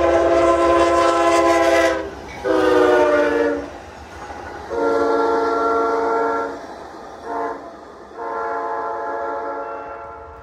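Locomotive air horn sounding a multi-tone chord in a series of blasts ending long, long, short, long: the standard warning for a road grade crossing. A low rumble from the train runs beneath it.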